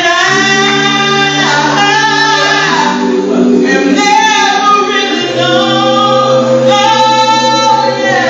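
A woman singing a gospel song into a handheld microphone, with long held notes that bend in pitch, over sustained backing chords that change about three and five seconds in.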